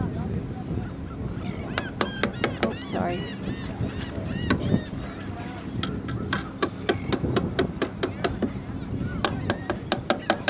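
Gulls calling in a run of short, arched notes, several a second, starting about two seconds in, over wind rumbling on the microphone.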